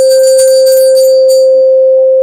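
A loud, steady bell tone with a bright jingling shimmer of chimes over it until about a second and a half in.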